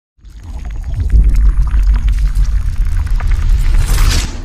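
Intro logo sound effect: a deep rumble that swells up within the first second and holds, with scattered crackles over it, ending in a bright rushing swoosh.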